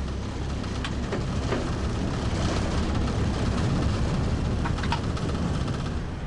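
Cab noise of a DB class E94 electric locomotive: a steady low rumble and hum, with a few short clicks about a second in and again near the end.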